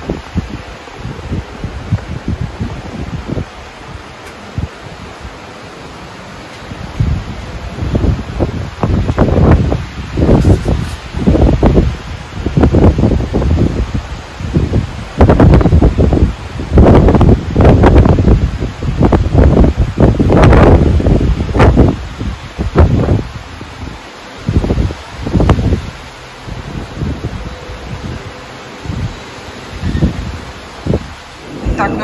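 Wind buffeting the microphone in repeated loud, uneven gusts through the middle, between calmer stretches of steady wind hiss.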